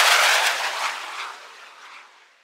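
Jet airliner taking off and climbing away overhead: a loud rush of jet engine noise, strongest at the start and fading away over about two seconds.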